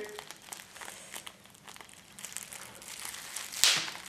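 Plastic bubble wrap being handled, with faint crinkling and small crackles, then one sharp pop of a bubble bursting about three and a half seconds in.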